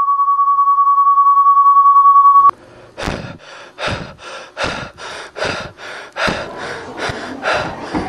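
Steady test tone near 1 kHz, growing louder and cutting off suddenly about two and a half seconds in. After a short gap comes a run of short, sharp noisy bursts, about two a second.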